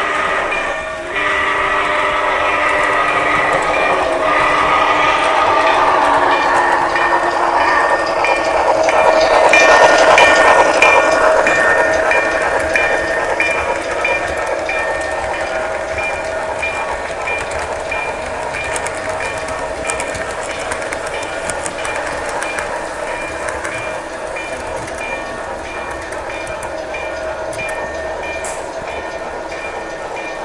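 HO scale model trains running on a layout, wheels clicking rapidly over the track, loudest about ten seconds in. Several steady held tones like a train horn sound over the first eight seconds, and a short high tone then repeats at an even pace through the rest.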